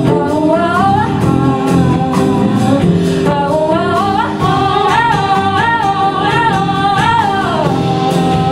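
Live band music: female singing that slides upward into long held notes, over guitar, bass guitar and drums.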